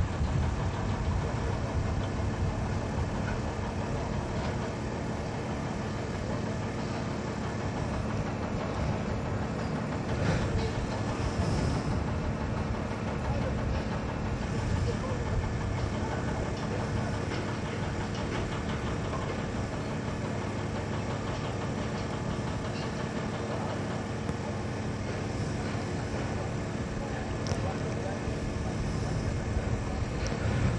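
A motor running steadily at idle, giving an unbroken low hum.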